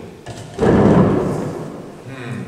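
A sudden loud thump as a man rises from a wooden chair at a wooden table, dying away over about a second in the reverberant room.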